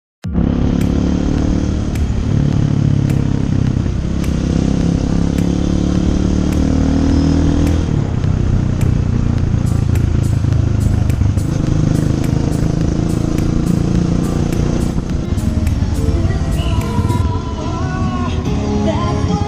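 Honda XLR200's single-cylinder four-stroke engine running under way, its pitch climbing and then shifting as the bike rides on. Music with a regular beat plays over it, and singing comes in near the end.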